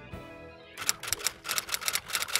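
Typewriter keys clacking in a rapid run, starting just under a second in, as a typing sound effect, over the tail of soft background music.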